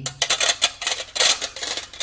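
Cheese grater being scraped in a quick series of scratchy strokes, about five a second.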